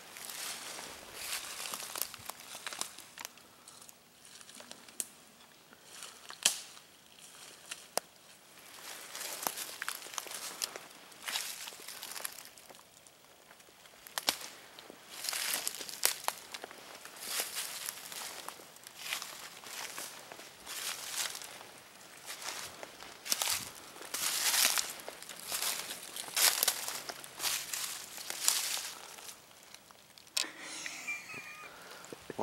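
Footsteps crunching through dry fallen leaves, the leaf litter rustling and crackling in irregular bursts.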